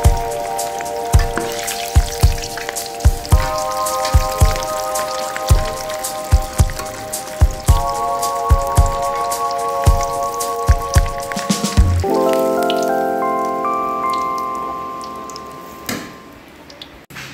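Hot oil sizzling and bubbling as shredded-pastry-wrapped prawns deep-fry in a wok, under background music with a steady beat. About twelve seconds in, the beat stops and a held chord fades out.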